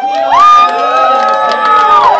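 Crowd cheering, several people yelling at once in long held cries that overlap; the loudest, highest cry starts about a third of a second in, is held, and drops away near the end.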